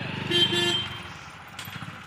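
A motor vehicle's engine running, with a short horn honk about half a second in, the loudest sound; the engine fades away after about a second.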